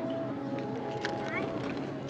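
Steady outdoor crowd ambience: faint background voices and a faint steady hum, with no distinct event standing out.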